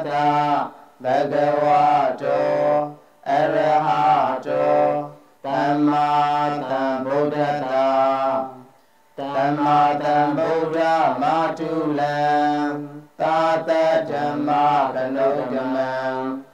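Buddhist devotional chanting by a single voice, held on a steady pitch in phrases of one to two seconds, each followed by a short breath.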